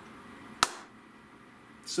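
A single sharp tap or knock about half a second in, over quiet room tone.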